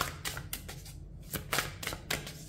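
A deck of tarot cards being shuffled by hand: an uneven run of short card flicks and slaps.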